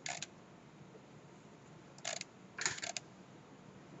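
A few short computer mouse clicks over quiet room tone: one right at the start and a small cluster a little over two seconds in.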